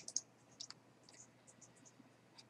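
Faint clicks of a computer mouse as a web page is scrolled, a quick cluster of about six in the first second, then a few scattered fainter ticks.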